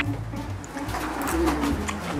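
Crisp crunching of fresh cucumber being bitten and chewed, a run of quick crackly crunches close to the microphone, with a low steady tone underneath.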